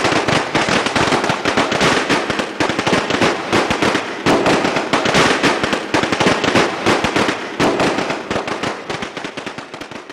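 Fireworks crackling: a dense, rapid run of sharp pops that fades away near the end.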